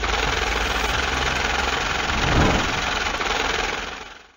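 Loud, harsh, rumbling noise effect that starts suddenly, swells briefly about two and a half seconds in and fades out near the end.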